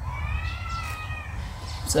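A single drawn-out animal call, high in pitch, rising and then gently falling, lasting just over a second.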